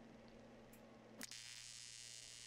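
AC TIG arc from a Lincoln Square Wave TIG 200 striking about a second in with a click, then buzzing faintly and steadily at its 150 Hz AC frequency while lighting up on the edge of thin aluminum. A faint low hum comes before the strike.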